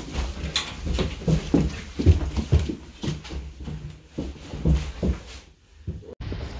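Quick footsteps thudding on a staircase, about two or three heavy steps a second, dying away near the end.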